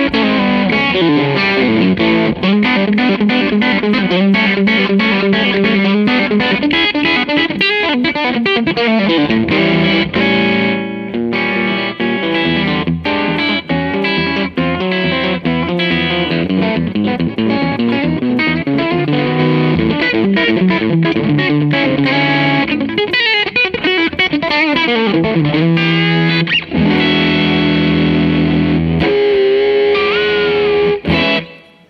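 Telecaster-style electric guitar played through a modeled 1953 tweed Fender Bassman, volume and tone maxed. It plays a continuous run of notes and chords with a little fuzzy, boxy overdrive.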